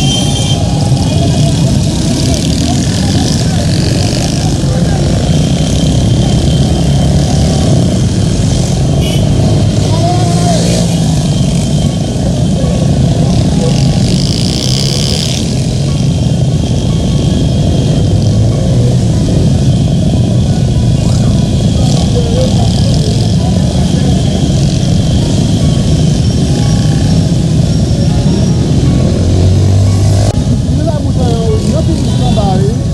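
Many motorcycle engines running in a dense street crowd, with crowd voices over them.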